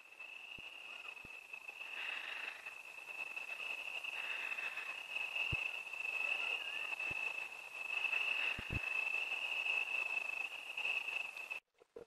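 Crickets trilling in one steady, unbroken high-pitched chorus, with a few faint knocks from the phone being handled.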